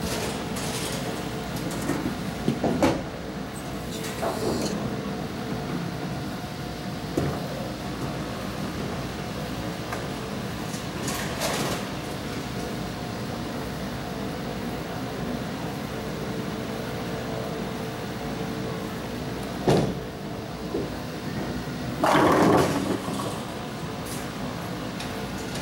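Bowling alley sounds: a steady rumble of lanes and machinery with scattered knocks of balls and pins, and a louder clattering crash of pins near the end.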